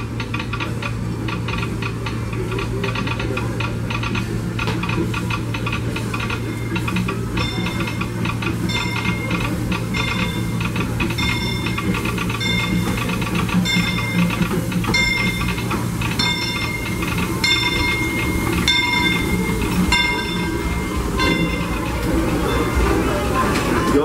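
Disneyland Railroad steam locomotive No. 3, Fred Gurley, arriving at the station with its bell ringing steadily from about seven seconds in, roughly once every three-quarters of a second, over the low running sound of the train.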